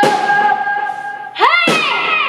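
Keyboard synthesizer sounding sustained electronic notes: a held tone, then a new note about a second and a half in that swoops in pitch before settling on a steady pitch.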